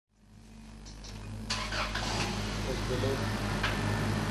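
Car engine idling with a steady low hum, fading in from silence over the first second and a half, with voices over it.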